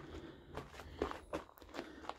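Footsteps of a hiker walking, a few short irregular steps about half a second apart.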